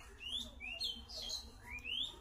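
A small bird chirping: a quick series of about five short, high chirps, some sliding up and some down, over a faint low hum.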